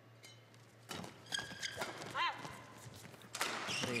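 Badminton rally: sharp racket strikes on the shuttlecock from about a second in, with a brief squeal of court shoes on the mat near the middle and busier hitting and footwork near the end.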